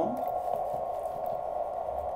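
Steady receiver hiss from a uSDX QRP transceiver's speaker, set to CW mode, heard as an unbroken narrow band of mid-pitched noise.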